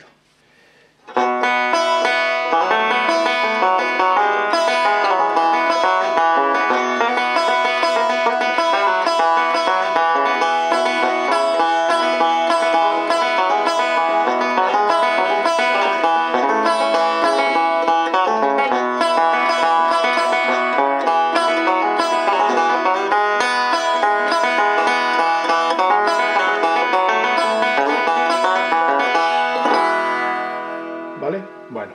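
Long-neck five-string banjo, believed to be a Vega, being played: after a brief pause a continuous flow of picked notes and chords begins about a second in and keeps up at a steady level.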